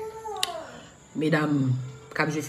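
A woman's high, drawn-out whining cry falling in pitch over about a second, with a sharp click partway through, followed by a burst of speech near the end.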